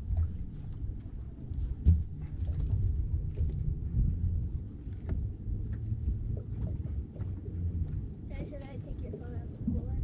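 Wind buffeting the microphone in an uneven low rumble on an open boat, with scattered knocks and taps on the deck while a hooked fish is handled. A short voice is heard near the end.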